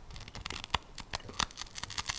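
Biting into and chewing a thick, crusty pizza slice close to the microphone: a run of irregular crackly crunches from the crust.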